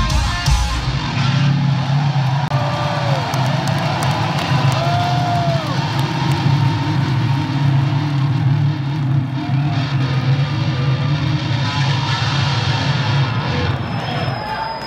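A live heavy metal band ends a song just after the start. A low held drone from the stage then rings on, over the arena crowd cheering and whistling.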